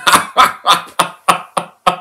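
A man laughing in disbelief: a run of about seven short, evenly spaced "ha" pulses, roughly three a second, trailing off near the end.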